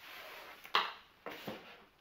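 Cardboard box and bubble-wrap packaging being handled and pulled open: rustling, with a sharp loud rustle under a second in and two shorter ones soon after.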